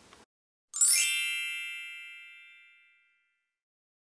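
A magical sparkle chime effect: a quick downward cascade of high, bell-like tinkling tones that rings and fades away over about two seconds.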